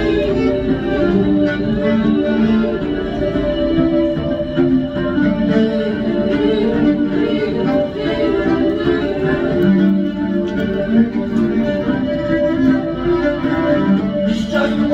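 Fiddle playing an instrumental passage of a song, a run of sustained and moving notes between the sung lines.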